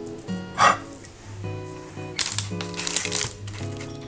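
Light instrumental background music, with a short loud swish about half a second in. From about two seconds in comes a dense crinkly scratching: oatmeal cookie dough being pressed flat on parchment paper.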